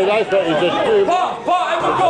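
Several men's voices talking over one another, unclear chatter with no distinct words.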